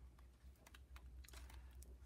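Faint ticks and rustles of paper as the pages of a 1923 hardcover book are turned by hand, a few soft clicks scattered through, over a low steady hum.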